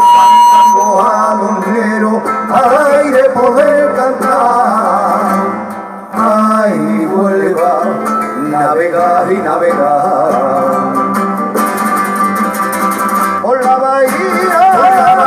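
Live Andalusian folk song: acoustic guitars playing chords under male voices singing a long, wavering melismatic line. The music drops briefly about six seconds in, then picks up again.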